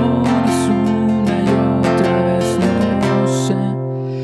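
Nylon-string classical guitar with a capo on the first fret, strummed in a steady rhythm of repeated chord strokes.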